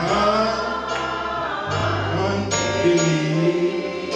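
Gospel singing led by a man's voice on a microphone, with other voices and an instrumental accompaniment whose low bass line changes note every second or so.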